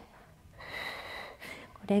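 A woman drawing an audible breath through the mouth, about a second long and slightly whistly, on a cued inhale while holding both legs raised in a Pilates exercise; she starts speaking near the end.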